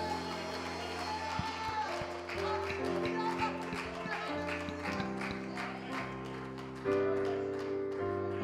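Church worship band music: sustained keyboard chords that change every second or so, with steady hand claps keeping the beat through the middle.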